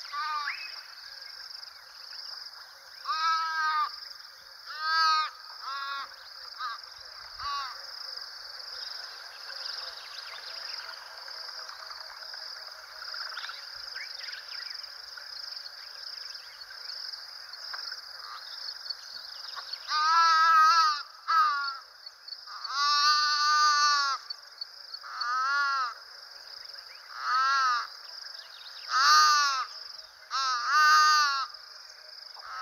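Nyala calf bleating in distress while caught by a lioness: repeated calls, each rising and falling in pitch, loudest and longest in a cluster about two-thirds of the way through and again near the end. A steady high insect drone runs underneath.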